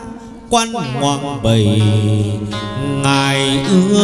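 Hát văn (chầu văn) ritual music: plucked strings with a voice holding long, gliding notes, and a couple of sharp percussive strikes about half a second and a second and a half in.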